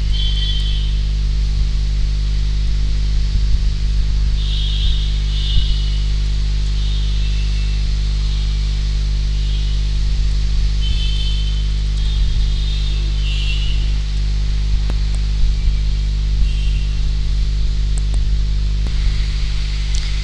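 Steady low electrical hum, a stack of even low tones that does not change, with faint brief higher sounds now and then.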